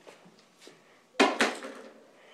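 Dry-erase marker drawn across a whiteboard: a stroke that starts sharply a little over a second in and fades over about half a second.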